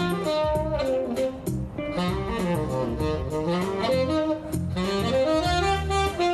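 Tenor saxophone, fitted with a custom copper and 18K-gold mouthpiece, playing a jazz melody of held and bending notes. Lower bass notes sound underneath it.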